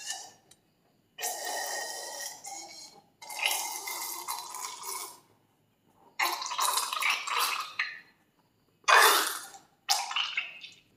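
Wet squelching of slime being squeezed out of a cut-open rubber balloon, in four separate squeezes of one to two seconds each, each starting abruptly.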